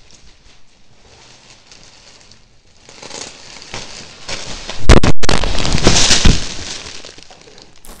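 Plastic packaging and a cardboard shipping box crinkling and rustling as they are handled. It is faint at first, grows loud past the halfway mark with a sharp knock, then fades.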